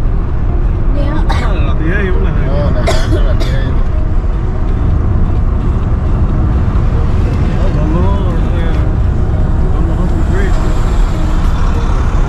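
Steady low rumble of a car's engine and tyres heard from inside the cabin while driving at road speed, with people talking over it.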